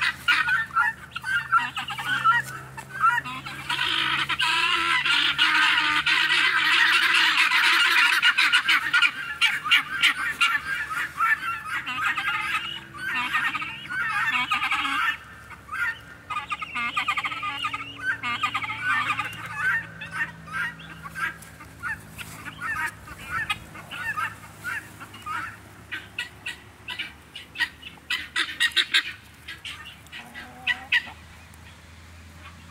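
A flock of helmeted guineafowl calling: a dense chorus of rapid, harsh, repeated notes, heaviest through the first half and thinning to scattered bursts of calls in the second half.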